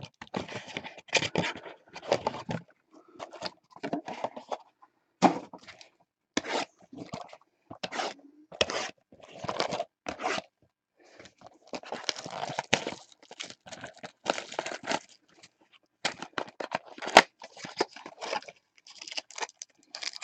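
A cardboard trading-card hobby box being handled and opened by hand: irregular bursts of scraping, crunching and tearing of cardboard and wrapping, with a few sharp knocks against the table.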